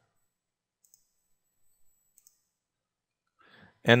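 A few faint, short clicks of a computer mouse about a second and two seconds in, with near silence between them, then a man's voice near the end.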